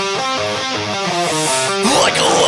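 Electric guitar in a progressive metal song playing a rapid run of single notes without drums. A rising slide comes near the end.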